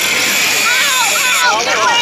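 Handheld angle grinder cutting metal with a steady high whine that stops about one and a half seconds in. A person cries out "ow" in pain near the end.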